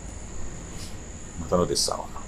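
A steady high-pitched whine in the background ambience, unbroken throughout, with a short murmur of a voice about one and a half seconds in.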